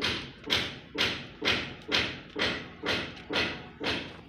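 Footsteps crunching at a steady walking pace on dry dirt and twigs, about two steps a second.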